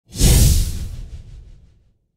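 Whoosh transition sound effect with a deep low rumble under it, hitting just after the start and fading away over about a second and a half.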